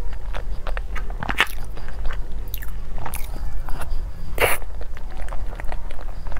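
Close-miked mouth sounds of eating a soft taro-paste dessert: wet smacking and chewing made up of many short clicks. The loudest click comes about four and a half seconds in, with another strong one about a second and a half in.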